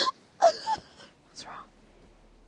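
A young woman laughing breathily in a few short bursts that die away by about a second and a half in.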